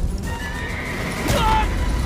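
A horse whinnies, a short falling cry about halfway through, over background music.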